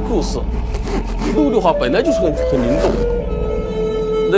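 A voice speaking over background music with long held notes.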